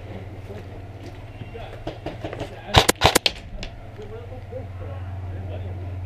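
A quick string of four or five sharp cracks about three seconds in, typical of an airsoft rifle firing a few shots, over a steady low rumble.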